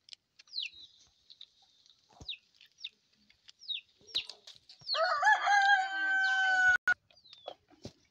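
Rooster crowing once, about five seconds in, a long held call lasting nearly two seconds. Before it come short, high, falling chirps from small birds.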